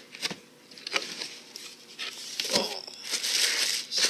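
Cable packaging being handled and opened: a few short clicks and knocks, then loud, continuous rustling and crinkling in the last second or so.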